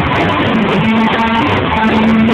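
A live rock band playing loud: electric guitar over a drum kit, with held guitar notes from about half a second in.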